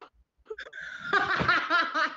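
A person laughing: a long run of quick laughing pulses that begins about half a second in and grows loud about a second in.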